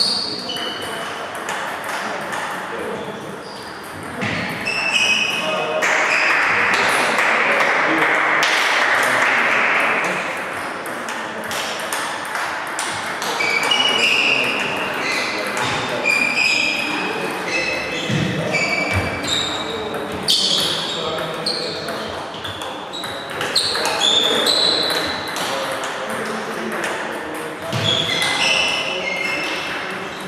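Table tennis balls being hit and bouncing on the tables in rallies at several tables, many sharp clicks echoing in a large hall, with short high shoe squeaks on the sports floor and voices in the background. About six seconds in, a few seconds of hiss rise over the clicks.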